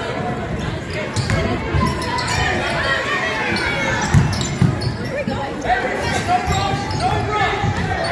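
Crowd chatter in a gym during a basketball game, with a basketball bouncing on the floor several times, the thumps clustered about one to five seconds in.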